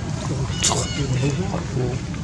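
Background voices over a steady low motor-like rumble, with one brief sharp high squeak a little over half a second in.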